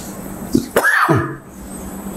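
A man clears his throat once, a short voiced sound with a falling pitch about a second in.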